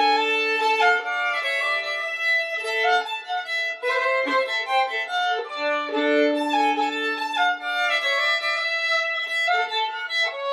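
Fiddle music: a bowed tune of long held notes moving from pitch to pitch, with a lower note sounding under the melody at times.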